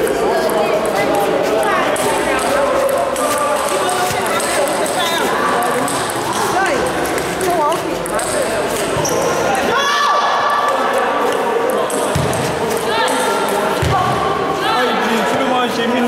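Table tennis ball clicking repeatedly off bats and table during rallies, over voices talking.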